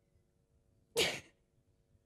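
A person's single sharp, breathy gasp with a falling voice about a second in, part of a series of such gasps a couple of seconds apart, over a faint steady hum.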